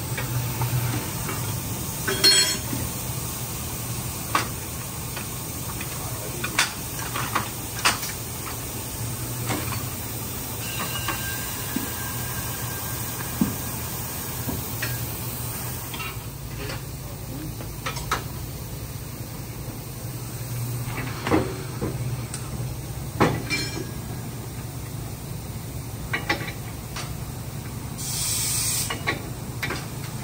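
Tire shop work noise: a steady low machine hum with scattered metal clicks and knocks as a tire is worked onto a wheel on a tire changer and the wheel is handled at a wheel balancer. A short burst of air hiss comes near the end.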